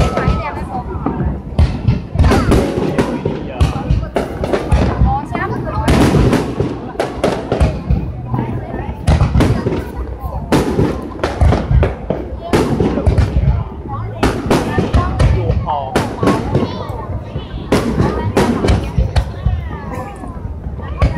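Aerial fireworks bursting in a rapid, irregular string of loud bangs, with voices underneath.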